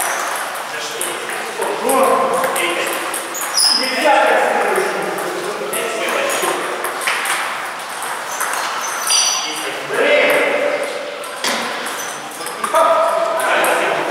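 Table tennis rallies: a celluloid ball clicking off rubber paddles and bouncing on the table in quick, irregular succession, with a bright echo in a large tiled hall.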